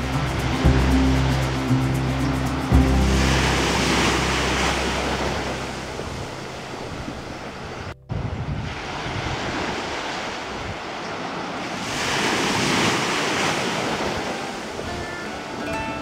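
Ocean surf breaking on a beach: a steady wash of waves that swells twice as breakers come in, about four seconds in and again near thirteen seconds, with a brief dropout halfway. A low steady hum underlies the first few seconds.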